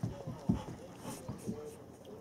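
Large dog panting with its mouth open, a few breathy puffs, with soft low thumps, the loudest about half a second in.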